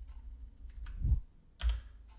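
Computer keyboard being typed on: a few scattered keystrokes, with two heavier knocks in the second half.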